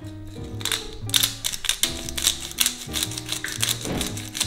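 Hand-twisted pepper mill grinding peppercorns: a fast run of gritty clicks that starts about half a second in, over background music.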